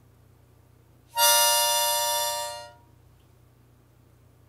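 Harmonica playing one held note for about a second and a half, starting about a second in, loudest at its start and then fading away.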